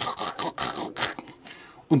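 Quiet, indistinct speech in a pause between sentences, fading low before talk picks up again near the end.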